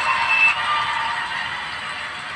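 Rushing, hiss-like noise from the talent-show broadcast audio, fading slowly, with a brief high tone in the first half second.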